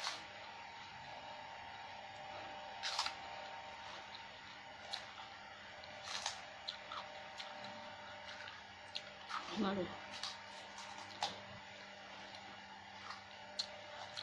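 Close-up eating sounds: a metal spoon clicking against a plastic bowl and mouth sounds of chewing, as scattered short clicks every second or so over a faint steady hum. A brief vocal sound comes about ten seconds in.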